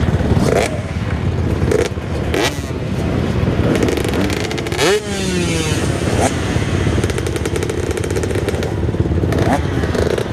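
Motocross bike engines running in the pits, with revs that rise and fall, the clearest about halfway through. A few sharp knocks in the first couple of seconds.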